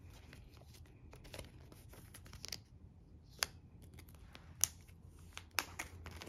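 A photocard being slid into a plastic binder sleeve pocket: faint scraping and crinkling of the plastic, with a few sharp clicks, the loudest about halfway through and a second later, then the sleeve page being turned near the end.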